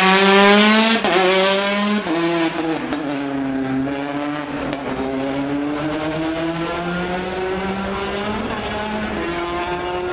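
Rally car passing close at full throttle, loudest in the first second, then changing up twice in quick succession about one and two seconds in as it pulls away. Its engine keeps climbing in pitch through the gears as it draws off, with another upshift near the end.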